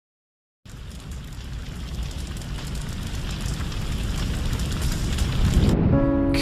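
A crackling, rain-like noise with a low rumble under it, swelling steadily louder after a short silence at the start, as the build-up into a song. It drops away just before the end as held musical tones come in.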